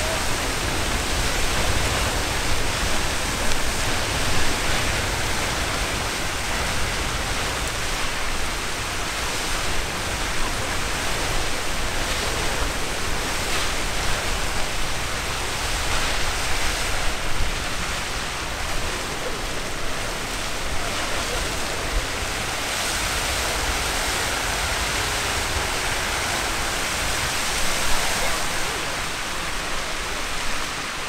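Castle Geyser erupting: its column of boiling water and steam gushing from the sinter cone as a steady, loud rushing noise.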